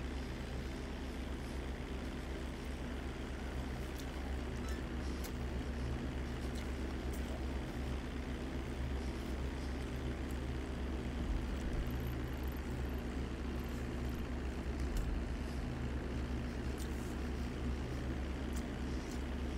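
A steady low hum with an even hiss over it, the background noise of a room, with a few faint ticks scattered through it.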